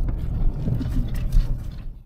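Low rumble of a car's engine and running gear heard inside the cabin as the car is manoeuvred slowly at low speed.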